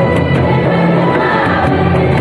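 A large group of voices singing a hymn together in unison, with a steady beat of about four strokes a second running under the singing.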